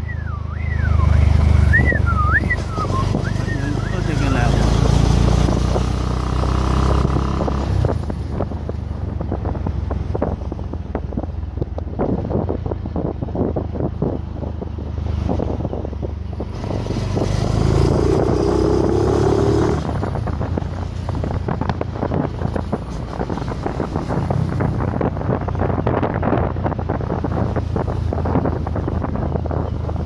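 Motorcycle riding along a road, its engine running under the steady buffeting of wind on the microphone. Some wavering high tones are heard in the first few seconds.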